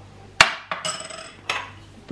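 Kitchen utensils knocking against dishes: a sharp clink about half a second in, a short scraping rattle, then another knock about a second and a half in.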